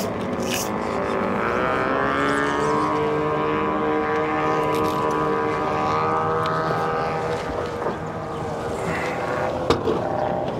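Motorboat engine running steadily; its pitch rises about two seconds in, holds, then fades after about seven seconds. A sharp tap near the end.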